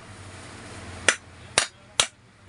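Hammer tapping the housing of a ceiling fan motor during assembly: two sharp strikes about half a second apart, then a third at the very end.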